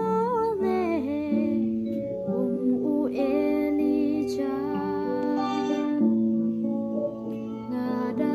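A woman singing a Khasi gospel song, with held, sliding notes over a plucked-string accompaniment.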